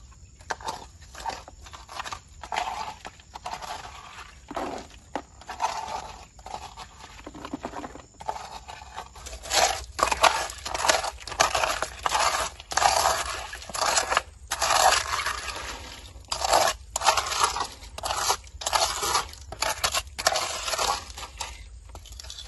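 A hand scraping and raking through wet gravel and pebbles, stones crunching and grinding against each other in irregular strokes. The strokes come louder and closer together from about nine seconds in.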